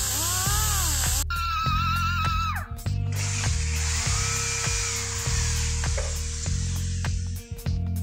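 Background music over a high-pitched rotary-tool whine: a grinder with a carbide burr working the cylinder-head port, its pitch dipping and rising as it bites, then a steadier whine. From about 3 s a drill runs with a steady hiss until shortly before the end.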